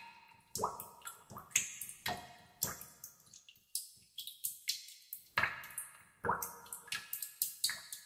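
Water dripping in a cave: irregular drops falling into water, several a second, many with a short ringing pitched tone that fades away.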